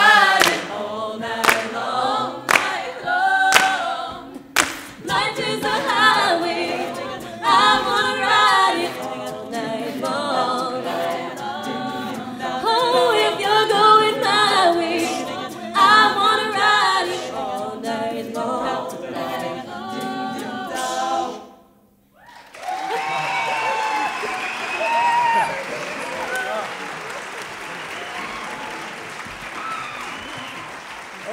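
Mixed male and female a cappella choir singing in harmony, the voices stopping together about two-thirds of the way through, followed by audience applause.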